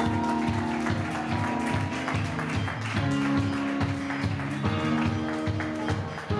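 Live band playing: electric guitars, bass and drums, with sustained chords and a steady beat. The chord changes about three seconds in and again near five seconds.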